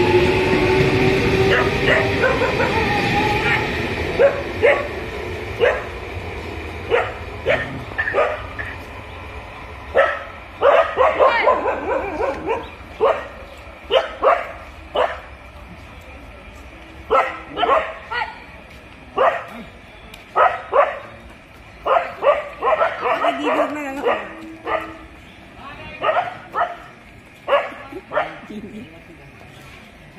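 An electric local train pulls away, its rumble and a slightly rising motor whine fading over the first few seconds. Then dogs bark repeatedly in quick runs of short barks.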